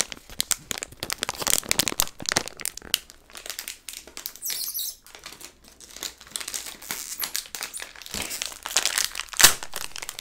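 Red plastic snack packet crinkling and crackling in the hands, close to the microphone, in quick, uneven bursts of crackles, with one sharper, louder crackle near the end.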